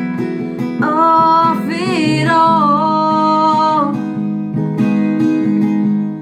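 Cutaway acoustic guitar strummed in a steady rhythm, with a woman singing. She holds one long line, with bends in pitch, from about a second in until about four seconds.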